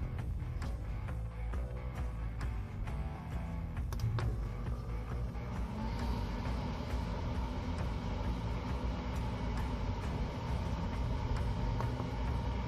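Background music, with a few light clicks in the first seconds. About halfway through, a Grilla Grills OG pellet smoker's fan starts up as a steady hum and whine as the grill is powered on to start its fire.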